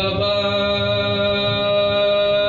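A man's voice chanting soz, the Urdu elegy for Karbala, holding one long steady note.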